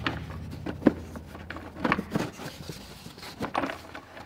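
Hard plastic air filter housing lid of an Audi Q3's airbox being set down over the new filter and pressed into place: a few short plastic knocks and clicks with some rubbing.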